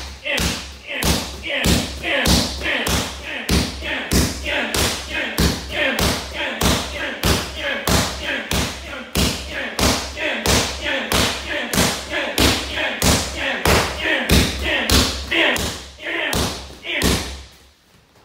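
Muay Thai kicks landing on leather Thai pads in a fast, steady rhythm, about three sharp smacks every two seconds, each with a sharp breath from the kicker. The strikes stop near the end.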